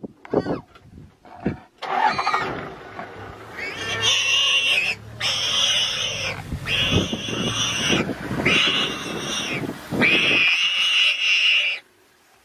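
Hyenas calling at a lion's kill: a few short sounds, then a long, loud run of high calls in stretches of one to two seconds with brief breaks between them, cutting off just before the end.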